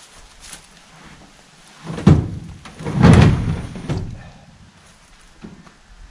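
A heavy maple log being shoved into a pickup truck bed, knocking and rumbling against the bed: a sharp thump about two seconds in, then a longer rumbling scrape and another knock about a second later.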